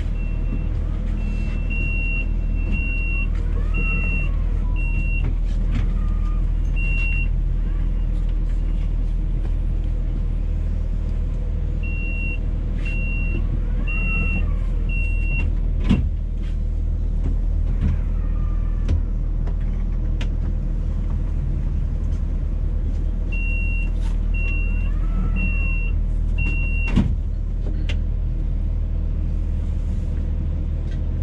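A stationary tram, heard from inside, with the steady low hum of its onboard equipment. Over the hum come groups of four or five short high beeps, about one a second, heard three times, and two sharp knocks, one about halfway and one near the end.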